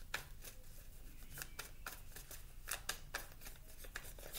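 A tarot deck being shuffled by hand: faint, irregular flicks and taps of the cards.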